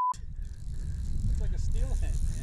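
A censor bleep, a steady pure tone, cuts off sharply right at the start, covering an expletive. After it comes a steady low rumble of wind and river water, with a faint voice near the end.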